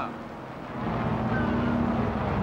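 Propeller aircraft's piston engines droning steadily, growing louder about a second in.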